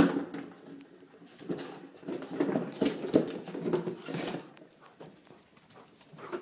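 A Bergamasco sheepdog scuffling with a cardboard box on a wooden floor: a sharp knock at the start, then irregular bursts of scraping and rustling that die down near the end.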